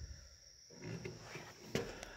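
Faint handling rustle with a soft knock at the start and a sharp click near the end as the camera moves around the tractor cab, over a steady high-pitched chirring of crickets.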